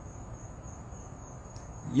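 A steady, high-pitched tone, one thin unbroken whine, over faint low room noise.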